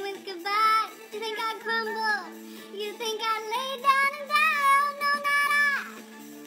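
A high voice sings a disco tune without clear words. It holds long notes that slide down sharply at their ends, about two seconds in and again just before the end.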